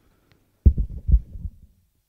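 A burst of low, dull thumps and rubbing on a close-worn headset microphone, as from the wearer moving or touching it. It starts about a third of the way in, comes as several quick thuds over about a second, and then stops.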